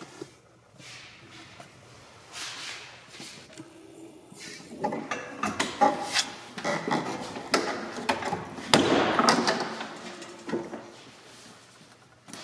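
Soft top's rear curtain on a Land Rover Defender 90 being unzipped and handled: zipper rasps with clicks and rustles of the vinyl and fittings. They build from about five seconds in and are loudest around nine seconds.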